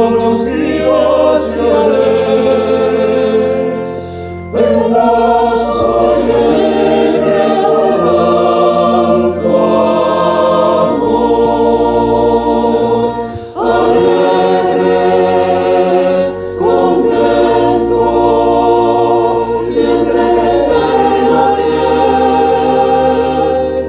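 Mixed choir of men and women singing a Spanish-language hymn with keyboard accompaniment, in long sustained phrases broken by short breath pauses about four and thirteen seconds in.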